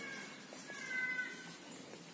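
A faint meow from a cat, one short high call about half a second in.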